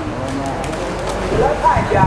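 Speech: a man talking, with no other distinct sound.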